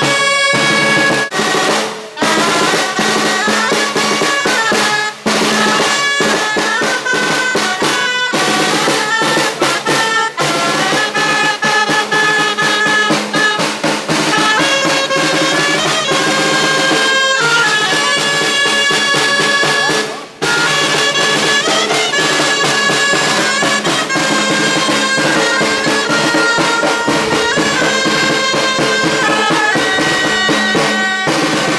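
Clarinets playing a melody together over a snare drum, with a few short breaks between phrases.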